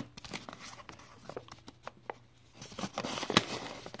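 A mailed envelope being torn open and handled: paper and plastic rustling and crinkling with scattered small clicks, busier near the end, where one sharp click is the loudest sound.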